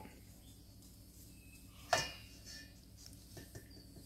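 A small plastic bowl knocking once, sharply, against a stainless steel mixing bowl about halfway through as egg white is poured into icing sugar, with a few faint ticks later against an otherwise quiet room.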